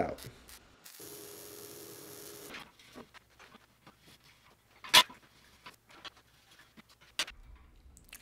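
A short MIG weld, heard as a steady hiss with a faint hum for about a second and a half. Then light metallic handling ticks and one sharp knock of steel parts near the middle, as casters are fitted to a welded square-tube steel frame.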